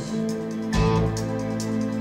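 Live band playing a slow song, sustained chords with a new chord struck under a second in.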